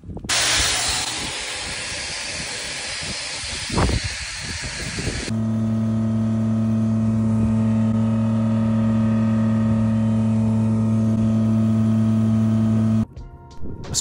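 A loud, steady rushing hiss for about five seconds, with one sharp sound near the four-second mark. It then gives way abruptly to a septic vacuum pump truck's pump running with a steady low hum, which cuts out about a second before the end.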